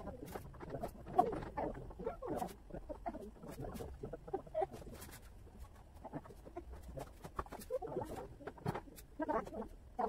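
Irregular clicks, taps and scraping from wooden table parts being handled and fitted during flat-pack assembly, the sharpest click about a second in.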